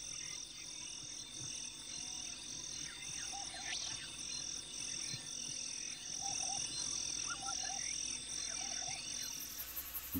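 Quiet wildlife ambience: a high insect chirring in even pulses, about two a second, with short low croaking calls now and then in twos and threes.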